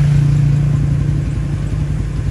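A motor vehicle's engine running steadily at idle: a continuous low hum.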